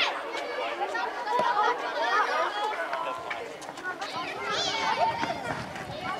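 Many overlapping children's voices shouting and calling out during a youth football game, with one high call about four and a half seconds in.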